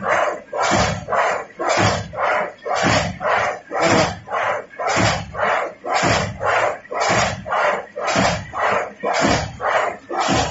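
High-speed paper straw making machine running at a stable speed, its cycle beating out a regular train of noisy strokes about three times a second.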